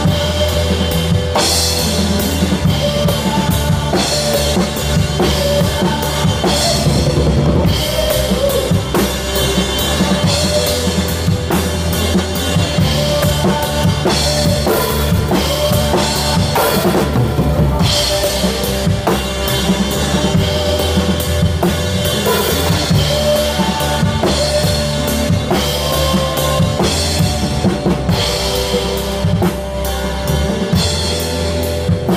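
A live rock band playing a song, with the drum kit close and loud (kick drum, snare and cymbal crashes) over electric guitars.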